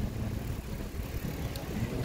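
Wind rumbling on a phone microphone while riding a bicycle along a street: an uneven low rumble with faint street noise above it.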